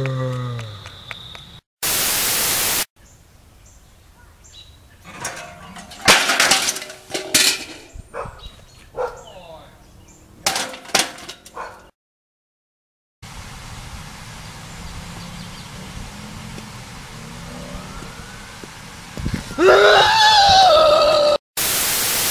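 Bursts of TV-static white noise between clips, a loud one about two seconds in and another at the end, and a stretch of steady static hiss in the second half. In between come scattered crackles and knocks, and a loud voice just before the final burst.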